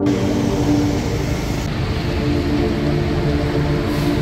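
Steady city street traffic noise, motorbike and car engines running together, with a low steady hum underneath.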